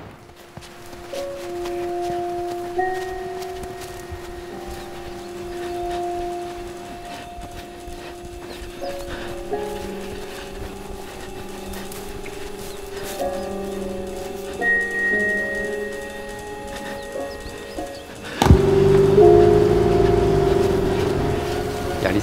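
Film score of slow, long-held notes that step from one pitch to the next, several notes sounding at once. About eighteen seconds in it turns suddenly louder and fuller and holds there.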